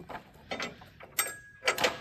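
A few sharp mechanical clicks and knocks, three or four in two seconds, with a faint steady high tone starting partway through.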